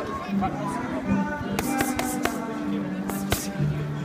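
Pop music with sustained notes plays throughout. Over it come several sharp smacks of boxing gloves striking focus mitts: a quick run of four in the middle, then two more near the end.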